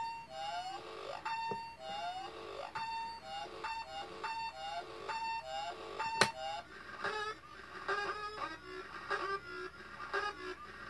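Circuit-bent Playskool toy's sound chip stuttering a short fragment of its tune in a loop, with gliding, bent pitches, the fragment repeating about every three quarters of a second. There is a single sharp click about six seconds in, and about a second later the loop changes to a higher, quicker stutter.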